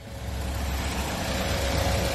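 Car engine idling: a steady low rumble with a faint constant hum above it.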